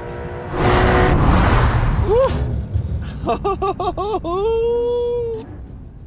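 A loud rush of noise lasting about two seconds, then a man laughing in short bursts, ending in one long held note.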